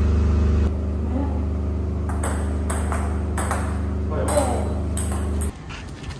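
Table tennis rally: sharp clicks of a ping-pong ball struck back and forth and bouncing on the table, about one to two a second, over a steady low hum. The hum drops in level a little under a second in and stops abruptly near the end.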